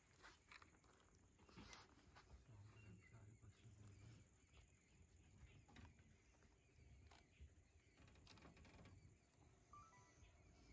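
Near silence: faint outdoor ambience with a few soft scattered clicks.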